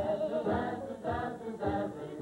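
Old film soundtrack of voices singing a song with a band accompanying, a steady beat thumping about twice a second. The recording is dull, with little treble.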